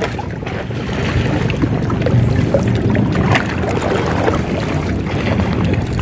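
Wind buffeting the microphone over small waves lapping at the rocky shoreline, a steady rushing rumble.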